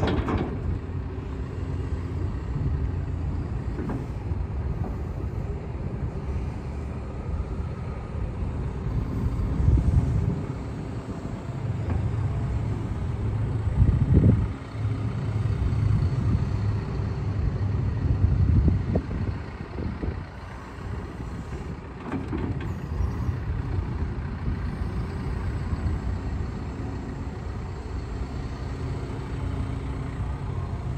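2020 Case CX210D excavator's diesel engine running, working the hydraulics as the boom, arm and bucket move. The engine note swells in stretches through the middle, then settles to a steadier, quieter run.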